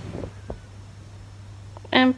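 Quiet room tone with a steady low hum, broken by a faint murmur at the start and a single small click about half a second in.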